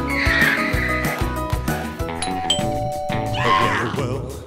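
Background music with a steady beat. A little past halfway a two-tone electronic doorbell chime sounds as the doorbell button is pressed. A short, high, wavering sound effect comes in the first second and again just before the end.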